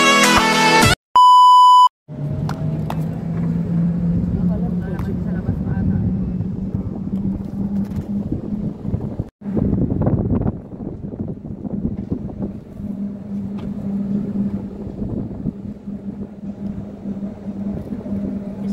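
Intro music cuts off about a second in, followed by one steady electronic beep lasting under a second. Then a continuous low rumble with a steady hum carries on, with a brief dropout about halfway through.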